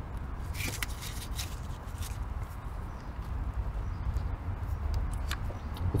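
Gloved fingers working the plastic release clip of the fuel line under the fuel rail, giving a few faint clicks and rubs over a steady low rumble.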